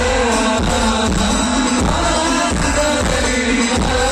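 Live sholawat: a singing voice over a band with a heavy, steady bass-drum beat, played loud through a large Tina Audio PA sound system.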